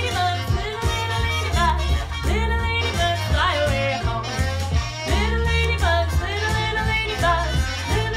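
A woman singing a children's song over instrumental accompaniment, with a steady bass line and beat.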